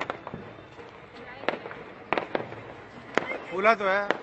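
Firecrackers going off: about ten sharp, irregular cracks over four seconds.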